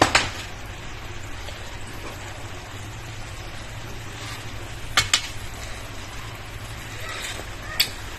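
Vegetable sauce simmering in a non-stick frying pan with a steady low hiss, and a few sharp clinks of a metal spoon against the pan, the loudest pair about five seconds in.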